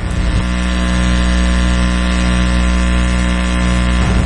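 A loud, steady, low mechanical drone with many even overtones that does not change in pitch.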